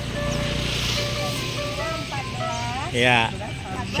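Roadside street ambience: background music, with a vehicle passing in the first second or so, and a short voice about three seconds in.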